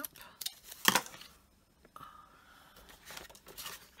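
Stampin' Up! paper trimmer cutting a strip of cardstock, with a sharp snap about a second in, then softer rustling and scraping of card being handled on the trimmer.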